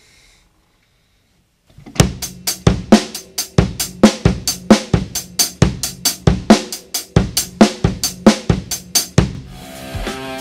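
Drum kit played after about two seconds of near silence: a fast, steady stream of single strokes on snare, bass drum and cymbals, stopping about a second before the end.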